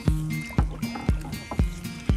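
Background music with a steady beat, about two beats a second, over held low notes that change pitch in steps.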